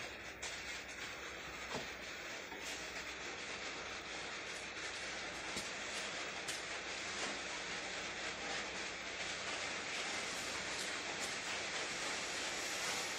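Electrically driven wire straightener running, steel wire drawn off a coil through its feed and straightening rollers: a steady mechanical noise that grows slightly louder, with scattered light clicks.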